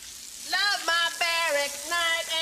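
Water spraying from a garden hose with a steady hiss, while a voice starts singing a tune about half a second in, holding and sliding between long notes.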